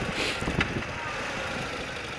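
Old BMW motorcycle running at low road speed, heard through a helmet-mounted mic as a steady mix of engine, tyre and wind noise, with a short hiss about a quarter second in.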